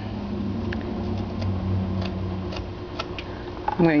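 A steady low hum, like a fan or small machine running, with a few faint sharp ticks from a carving knife working the wooden figure.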